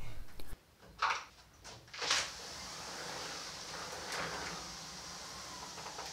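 Sliding glass door panel rolling along its track on freshly adjusted rollers: two short knocks about one and two seconds in, then a steady rolling hiss.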